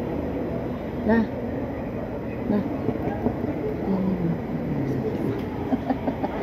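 Indistinct voices murmuring over a steady low rumble, with one short spoken word about a second in.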